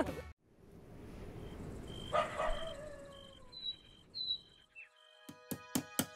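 Faint, airy background with a brief swell and falling tone about two seconds in and a few short high chirps, then plucked acoustic guitar notes begin about five seconds in.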